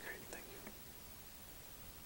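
Quiet room tone with a few faint whispered or murmured words in the first moment.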